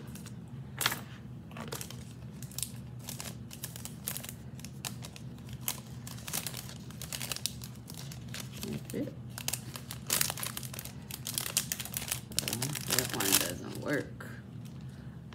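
Small plastic jewelry bags crinkling and rustling in irregular bursts as they are handled, busiest near the end.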